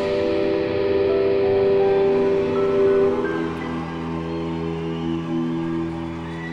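A band's closing chord held and ringing out, with sustained electric guitar among the notes. The loudest note drops away about halfway through and the chord thins as it fades.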